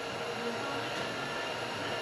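Steady background hum and hiss of room noise, with no distinct event.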